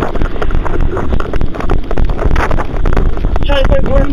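Wind buffeting a police body camera's microphone, with irregular rustles and knocks from the officer's movement while walking; a man's voice starts near the end.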